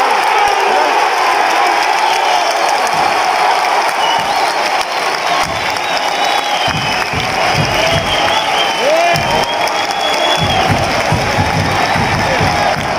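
Football supporters in a packed stand singing and chanting together, with cheering throughout. About halfway through, a low drum beat starts up under the singing.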